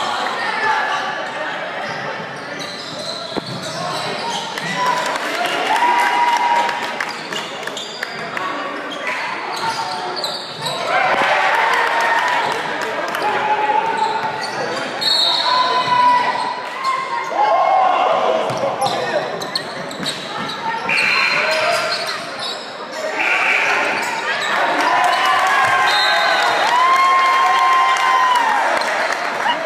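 Basketball game in a large gym: the ball bouncing on the hardwood court among short knocks of play, with voices calling out, all echoing in the hall.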